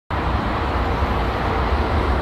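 Steady low rumble with a hiss: outdoor background noise.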